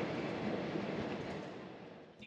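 Steady road and engine noise inside a moving motorhome's cab, fading out gradually toward the end.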